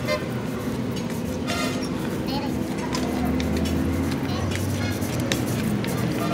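Chipping hammer tapping slag off a fresh weld bead on a steel truck axle housing: irregular sharp metallic taps, some ringing, over a steady low hum.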